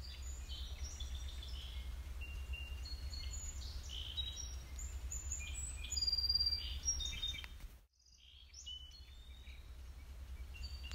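Several songbirds chirping and whistling over a steady low rumble. The sound drops out almost completely for a moment about eight seconds in, then the birdsong resumes.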